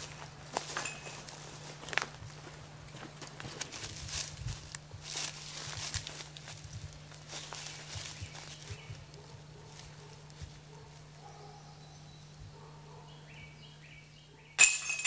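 Quiet footsteps crunching on dry leaf litter and twigs on a forest floor, irregular and busiest in the first half, thinning out toward the end, over a faint steady low hum.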